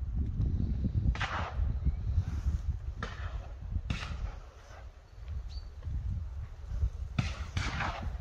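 About five shotgun shots at irregular intervals, each a sharp report with a short echoing tail, two of them close together near the end. Wind buffets the microphone with a low rumble.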